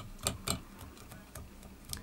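A golf club cleaning brush, used as a dubbing brush, raking through a spun loop of angora goat dubbing on a fly. Several quick, irregular scratching strokes pick the fibres out so they stand up.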